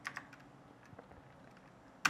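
A few faint computer keyboard keystrokes: a number being typed into a software field.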